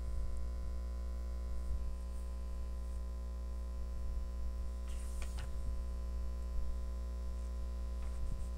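Steady electrical mains hum on the recording, with a brief faint noise about five seconds in.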